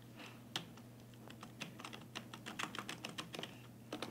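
Keystrokes on a new Genius keyboard, typing a password: a few separate key presses, then a quick run of about eight presses a second through the middle, fading out near the end.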